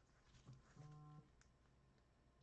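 Near silence: faint room tone with a few soft clicks and one brief low hum of about half a second near the middle.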